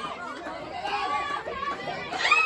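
Several voices talking and calling out over one another: spectator and player chatter with no clear single speaker.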